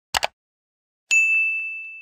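Subscribe-animation sound effects: a quick double mouse click, then about a second later a single bell ding, one clear high tone fading away over about a second.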